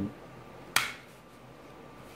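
A single short, sharp wooden click about three-quarters of a second in, the filler strip knocking against the guitar neck as it is pressed into place, over quiet room tone.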